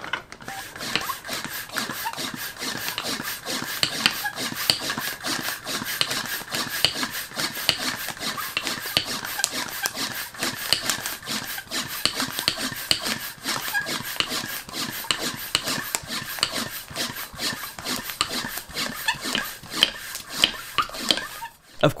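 Manual plastic hand air pump worked in a long run of quick, even strokes on a vacuum storage bag's one-way valve, drawing the air out of the bag as it compresses the clothes inside.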